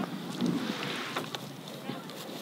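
Wind blowing across the microphone: a steady rushing noise with a few faint ticks.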